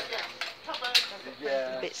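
A knife working along a length of Arundo donax cane, clicking and scraping as it shaves off the knobs that would catch an edge, with one sharp click about a second in.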